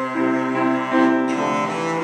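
Cello bowed solo, playing a legato melody whose notes change several times a second.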